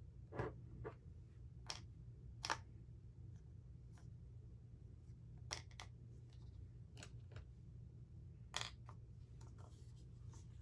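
Scattered light clicks and taps of makeup packaging being handled, about ten in all, with the loudest about two and a half seconds in and again near the end, over a steady low hum.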